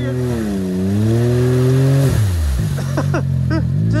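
Can-Am Maverick X3 side-by-side's engine revving under throttle in deep mud, its pitch swelling and dipping. About two seconds in the revs drop sharply back to a lower idle.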